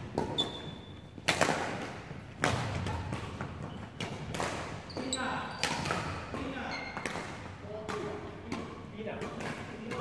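Badminton rally in a large hall: several sharp racket-on-shuttlecock smacks a second or more apart, with footfalls on the wooden court and voices in the background.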